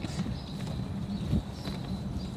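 Outdoor street ambience: a steady low rumble with a few faint knocks and one sharper thump about a second and a half in.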